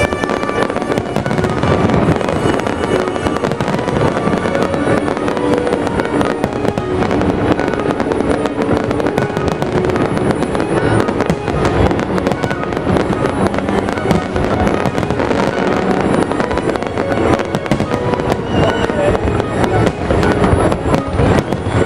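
A fireworks display, with many shells bursting and crackling in rapid, overlapping succession and no let-up.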